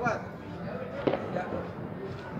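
A single short, sharp pop of a firework about a second in, with a smaller click just after, over steady low outdoor noise; not the full blast of the big firecracker.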